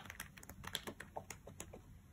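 Faint, irregular small clicks and ticks of paper sticker-book pages and glossy sticker sheets being handled and flipped through.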